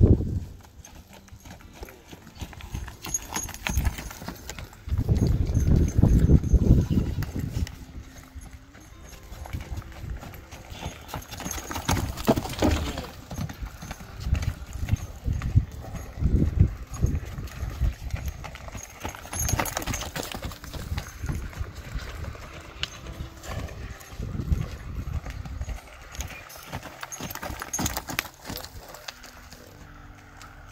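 Hoofbeats of a saddled paint horse loping around a dirt round pen, a run of thuds that grows louder and fainter as the horse circles, loudest about five to seven seconds in.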